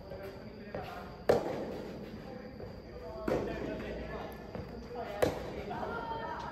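Soft tennis rackets striking a soft rubber ball three times, about two seconds apart, in a rally; the first hit is the loudest. Each hit echoes through a large indoor hall.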